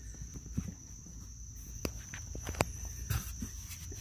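Light handling noise: scattered clicks and taps as hands and camera move around the plastic under-dash trim, over a steady faint high-pitched whine.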